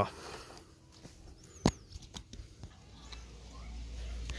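Small clicks of insulated spade wire connectors being handled and pushed together by hand, with one sharp click a little before halfway. A low rumble comes in near the end.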